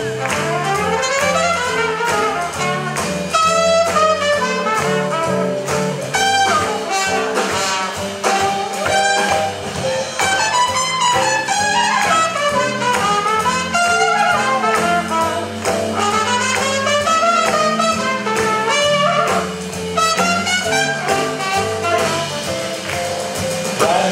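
Swing jazz band playing an up-tempo tune, horns carrying the melody over a walking bass line and a steady beat.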